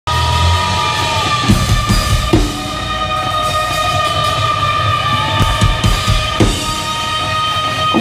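Live rock band playing loud: a long held high note rings over scattered drum hits and bass, with a few sliding notes.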